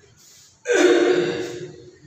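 A man's voice: a faint breath in, then a sudden voiced sound, like a drawn-out sigh or exclamation, lasting about a second and fading away.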